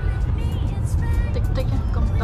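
Steady low rumble of road and tyre noise inside a car's cabin at highway speed.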